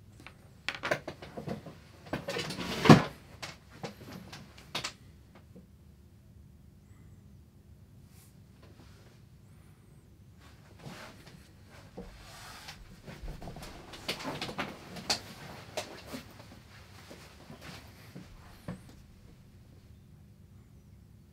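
Irregular clicks, knocks and scraping of small lab apparatus being handled, in two bursts: one in the first five seconds with a sharp knock about three seconds in, and another from about eleven to nineteen seconds.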